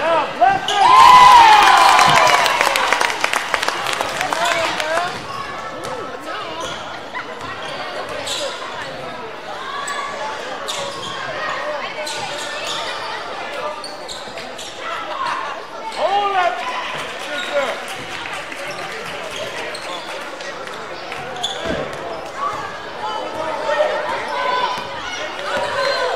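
Basketball game in a gym: a ball bouncing on the hardwood court among shouting voices, echoing in the hall. A burst of loud yelling comes about a second in, and shouts rise again past the middle.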